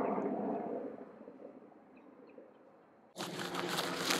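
Helicopter hovering overhead: a steady rotor and engine drone that fades away over the first couple of seconds to near silence. About three seconds in, louder, closer noise starts abruptly.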